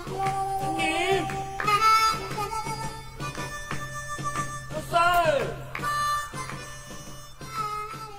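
Background music led by a harmonica, its notes bending up and down over a steady beat.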